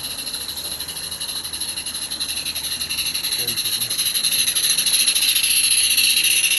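Live-steam garden-railway locomotive pulling a long rake of small wooden wagons, its exhaust beating in a rapid, even hiss while the wheels rattle on the track, growing steadily louder as the train approaches.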